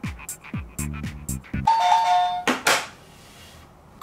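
Upbeat electronic background music with a steady beat stops about one and a half seconds in as a quiz answer buzzer is pressed, sounding a two-note falling ding-dong chime. A short noisy burst follows the chime.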